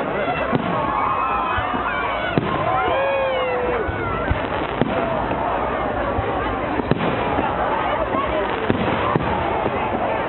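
Aerial fireworks bursting, a sharp bang every second or so at irregular intervals, over the chatter of a crowd.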